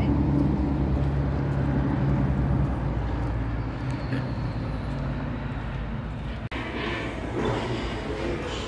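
Jet airliner flying low overhead: a steady low rumble that eases slightly about three seconds in, then cuts off abruptly and is replaced by restaurant clatter near the end.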